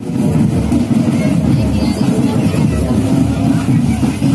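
Loud outdoor crowd noise: voices chattering over a heavy, uneven low rumble.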